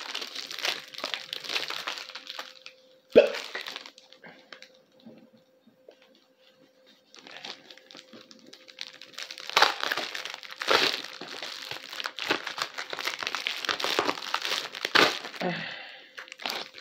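Plastic packaging crinkling and being torn open by hand in irregular bursts, with a sharp click about three seconds in and a quiet stretch in the middle.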